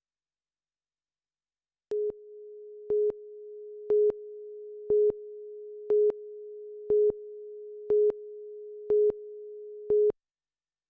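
Videotape countdown leader: a steady mid-pitched tone comes on about two seconds in, with a louder beep once a second, nine in all, marking each number of the countdown. It stops abruptly at the end.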